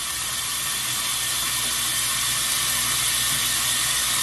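A steady, even hiss with no clear events in it.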